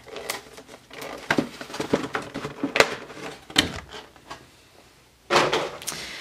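Stiff clear plastic packaging tray being handled as cards and packs are pulled from it: irregular clicks and crackles of plastic, dying down near the end before a louder burst just after five seconds.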